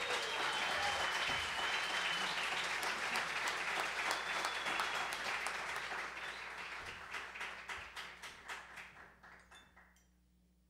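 Audience applauding at the end of a jazz piece, with a high steady whistle over the clapping in the first few seconds; the applause thins to scattered single claps and dies away about nine seconds in.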